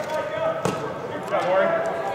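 Indistinct voices of football players and coaches calling out during practice in a large indoor hall, with one sharp smack about two-thirds of a second in.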